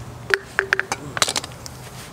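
Metal hand tools clinking as they are handled: four sharp clinks with a short ring under a second in, then a quick rattle of clinks just past the middle.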